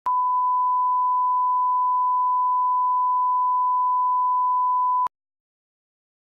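Broadcast line-up test tone, the standard 1 kHz reference tone that runs with colour bars at the head of a tape for level alignment: one steady, pure beep that cuts off abruptly with a click about five seconds in.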